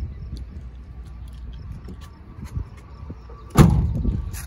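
A low steady rumble with faint ticks, then one loud, short thump about three and a half seconds in that dies away quickly.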